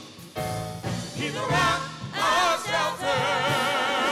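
Gospel praise-and-worship team singing into microphones, several voices with wavering vibrato over sustained low accompaniment notes.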